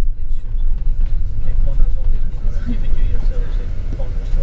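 Steady low rumble of a moving bus's engine and road noise heard from inside the bus, with indistinct voices over it.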